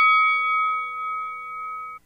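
A boxing-ring bell sound effect ringing out as the show's jingle ends, several tones sounding together and slowly fading, then cut off abruptly at the end.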